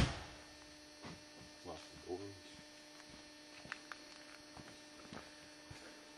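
A faint, steady electrical hum, one low tone, runs under a quiet background, with a single sharp click right at the start and a few soft ticks later on.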